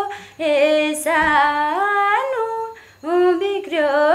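A woman singing a Nepali song unaccompanied. She holds long notes that slide from one pitch to the next, with two short pauses between phrases.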